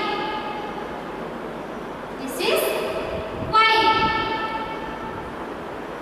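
A high voice drawing out long, steady held vowels: one fades out in the first second, and another rises about two and a half seconds in and is held for about two seconds.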